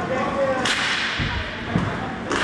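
A sharp crack of a hockey stick striking the puck, about a third of the way in, echoing in the rink hall, followed by two dull thuds.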